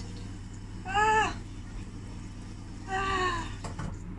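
Two short wordless cries, each rising then falling in pitch, about two seconds apart, over a steady low hum.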